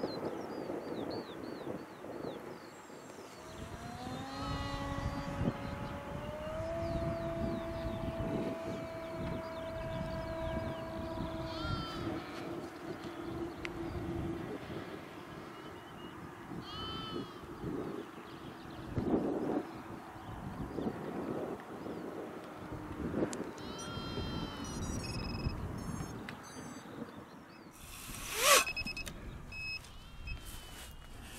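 Radio-controlled model aeroplane's motor droning overhead, its pitch rising about four seconds in and then holding steady for several seconds, over wind noise. A single sharp click near the end.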